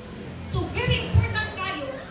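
Speech only: voices talking, starting about half a second in.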